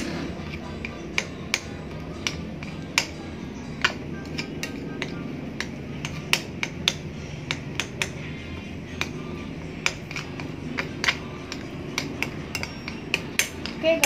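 Metal spoon clinking and tapping against a glass bowl in irregular sharp clicks as it mashes a thick, sticky paste of crushed Oreo cookies.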